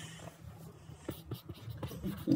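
Handwriting with a pen: short, irregular scratches and taps of the pen tip as a math expression is written out.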